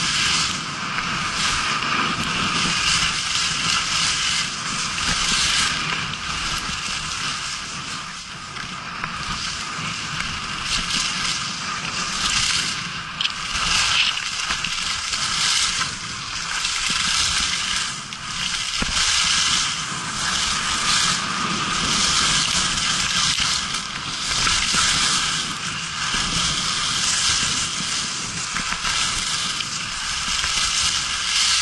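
Skis scraping and hissing over the snow during a downhill run, the hiss swelling and fading every couple of seconds as the skier turns.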